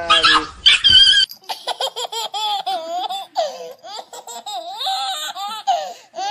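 A loud, shrill, high-pitched sound for about the first second, then, after a cut, high-pitched laughter that wavers and breaks repeatedly.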